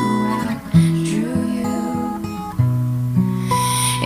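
Acoustic guitar playing slow chords, moving to a new chord every second or so, in an instrumental gap between sung lines.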